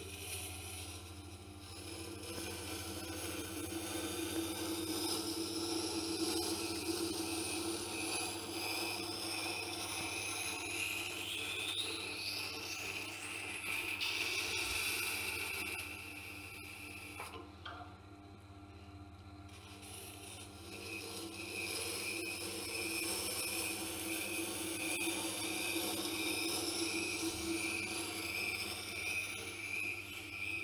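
Serrated knife's flat side grinding against a Tormek wet grinder's turning stone in two long passes, a scraping hiss over the machine's steady low motor hum, with a brief lull between the passes. The grinding raises a burr inside the arches of the serrations.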